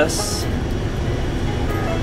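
A tour coach's engine running with a steady low rumble, heard from inside the cabin, under background music.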